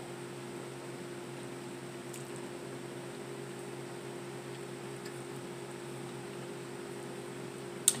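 Steady low electrical hum of a running household appliance, with a faint click about two seconds in and a sharp click just before the end.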